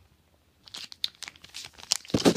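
Foil trading-card booster-pack wrapper crinkling and crackling in the hands, a run of quick irregular crackles starting about half a second in.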